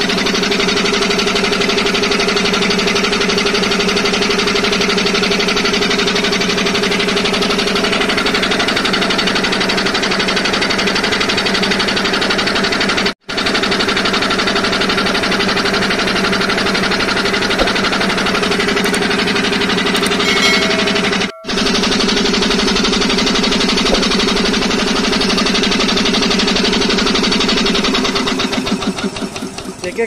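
10 HP three-cylinder air compressor pump running loudly and steadily with a continuous mechanical clatter and hum, being run in after a head service with new valves fitted to its cleaned heads. The sound drops out briefly twice near the middle.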